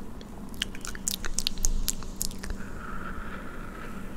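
Wet mouth clicks and lip smacks close to the microphone, a quick run of them in the first half, followed by a soft steady hiss, with a faint low hum underneath throughout.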